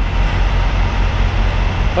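Steady low drone of idling diesel semi trucks.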